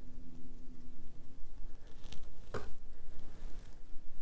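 Foam brush dabbing wet Mod Podge onto a glitter-covered tumbler: soft, irregular pats, with one sharper tap about two and a half seconds in.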